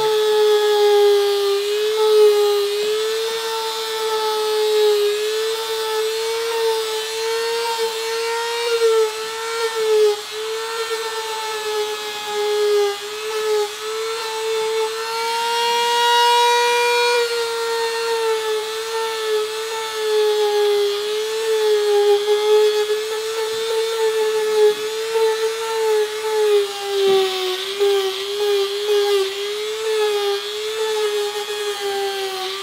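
Dremel rotary tool whining steadily as it carves wood-grain lines into a foam-mat shield, its pitch wavering slightly with the load. About halfway through, the pitch rises briefly as the bit comes off the foam.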